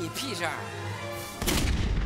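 A man's shouted line, then about one and a half seconds in a sudden loud gunshot with a heavy low boom that carries on.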